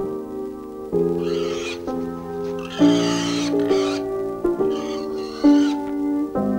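Piano music playing sustained chords that change about every second, with three short harsh sounds laid over it, about one, three and five seconds in.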